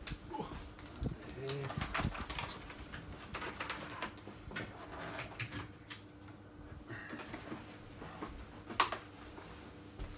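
Scattered light clicks and knocks of vacuum cleaner power cords and plugs being handled and plugged in, the vacuum cleaners not yet switched on. A short, low murmur comes about a second and a half in.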